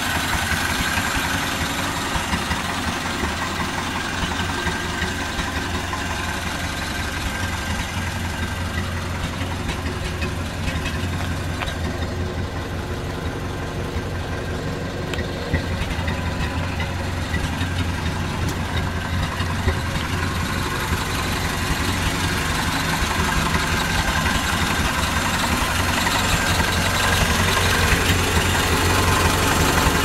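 1929 Ford AA truck's four-cylinder flathead engine idling steadily, with an even low pulse; it grows louder near the end.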